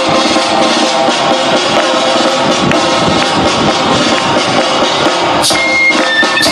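Live band playing a loud, upbeat folk-rock arrangement on drum kit, electric bass and guitar. A high, piping melody line enters about five and a half seconds in.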